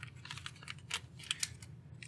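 Shiny plastic zip bags crinkling and clicking under fingers as they are handled: a string of faint, short crackles.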